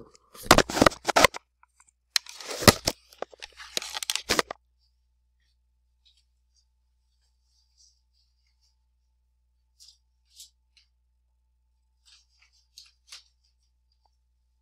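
Loud crackling and scraping of a headset microphone handled as it is taken off the head, in two bursts over the first four and a half seconds, followed by near silence with a few faint clicks.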